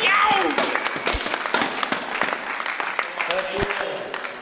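Audience applauding a winning point, the clapping slowly dying away.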